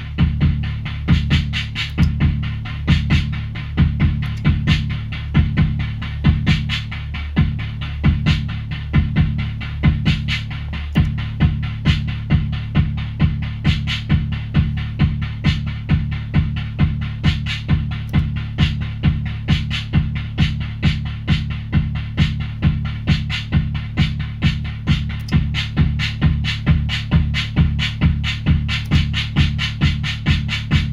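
Eurorack drum patch sequenced by a preset-rhythm module: a digital hi-hat ticking on every clock step over an analog kick drum and a decaying-noise snare, playing a steady looping beat. The kick and snare pattern changes twice in the first third.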